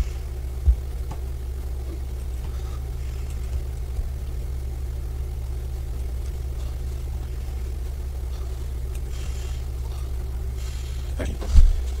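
Steady low background hum with no speech, and a single soft thump about a second in.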